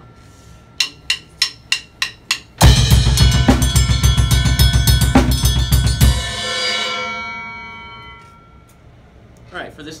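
A quick count-in of six sharp clicks, then a drum kit plays a fast pattern up to tempo: double-paradiddle sticking split between a ride cymbal and a six-inch zil bell over straight 16th notes on the bass drum. The playing stops after about three and a half seconds, and the cymbal and bell ring on and fade out over the next two seconds.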